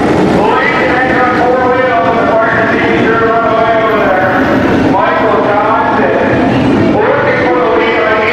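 Several sprint car engines running at low pace, their droning pitches overlapping and rising and falling as the drivers work the throttles.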